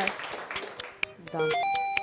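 A short electronic musical sting of steady held tones, typical of a TV show's bonus cue, starting about one and a half seconds in, with a brief spoken 'yes' just before it.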